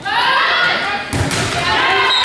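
A single sharp thump of a volleyball being struck, about a second in, over shouting voices of players and spectators.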